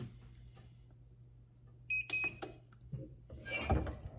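Heat press timer beeping a few quick times, signalling that the timed 15-second press is done, with a brief handling noise near the end.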